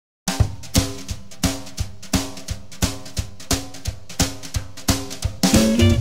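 Drum-kit intro to a song: a steady beat of sharp hits, with pitched instruments and bass joining near the end.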